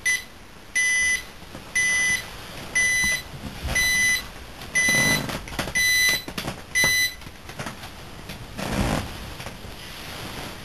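An electronic alarm beeping about once a second: eight short, high beeps that stop about seven seconds in. After that comes a brief rustle of bedding as the sleeper stirs.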